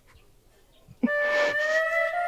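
Near silence, then film score music comes in suddenly about a second in with long held notes.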